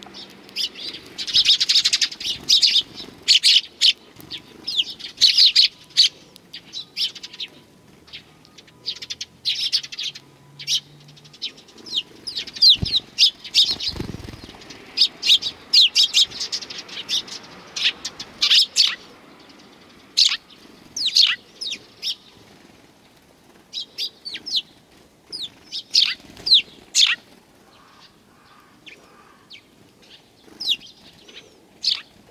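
Eurasian tree sparrows chirping again and again, with wing flaps as they land and jostle on a hand full of seed.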